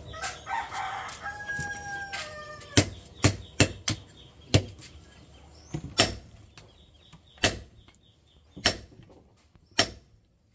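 A rooster crows once over the first two and a half seconds. Then a hand hammer strikes red-hot leaf-spring steel on an anvil about ten times at an uneven pace, each blow a sharp metallic strike with a short ring: the steel is being forged into a knife blade.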